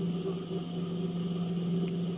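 Steady electric motor hum from an idling industrial sewing machine, running without stitching, with a faint click near the end.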